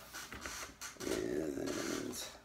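A vinyl LP record in its paper inner sleeve being slid out of its cardboard jacket: paper and card rustling at first, then about a second in a louder, rough scraping as the sleeve drags out against the jacket.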